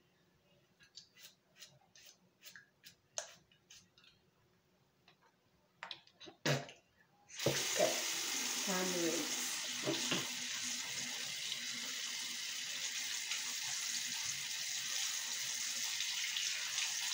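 A few light clicks and knocks, then about seven seconds in a bathroom sink faucet is turned on and runs steadily into the basin.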